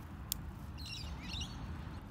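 A short run of high bird chirps about a second in, over a low, steady outdoor background noise, with a single sharp click just before.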